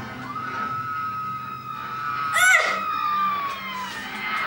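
Action-film soundtrack playing from a television: a long held tone that slowly falls in pitch, with a brief high cry sweeping down in pitch about halfway through, the loudest sound.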